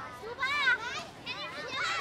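Children's voices in a seated crowd, with two short high-pitched calls, about half a second in and again past one second.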